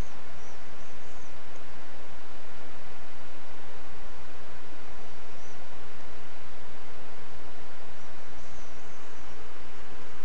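Steady hiss with a low hum underneath, unchanging throughout: background noise of the recording, with a few faint high squeaks near the start and again near the end.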